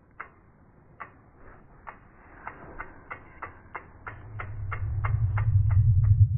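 Logo-reveal sound effect: sharp ticks that come faster and faster, reaching about three a second, joined about two-thirds of the way in by a deep swell that grows louder toward the end.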